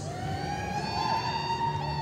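A spectator's long whistle, rising in pitch over the first half-second and then held, with a few short whistles from others near the end, cheering on a reining run.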